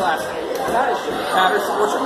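Indistinct chatter of several voices talking at once.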